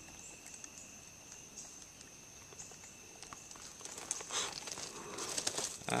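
Insects singing steadily in a high, thin drone. From about four seconds in, faint rustling and small clicks of something handled close by come in.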